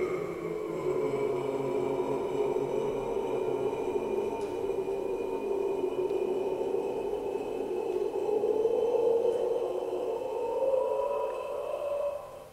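Recorded mezzo-soprano holding one long sung note with a nearly steady pitch, an example of her vocal distortion technique played back over loudspeakers. The note swells slightly a couple of seconds before it ends.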